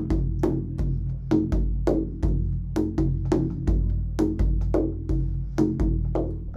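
Large hand-held frame drum played with the hands in the Egyptian Zaar rhythm at a brisk, bouncy tempo: deep ringing doom strokes about every 0.7 s, with lighter, sharper ka and tek strokes between them, the ka falling just before each doom.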